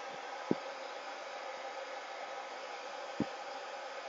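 Dryer blowing steadily through a flexible hose, with two brief low thumps.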